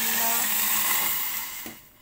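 Water poured from a glass cup onto sugar in a pot: a steady splashing pour that fades out about a second and a half in.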